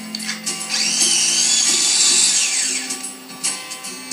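Food processor motor whirring for about two seconds as it blends a glaze: the whine rises as it starts up and falls away as it spins down. Background music plays throughout.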